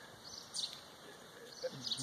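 Quiet outdoor background with faint bird chirps: one short, high chirp about half a second in and softer ones near the end.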